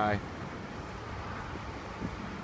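Steady outdoor background noise: an even hiss with no distinct events. The tail of a man's word falls at the very start.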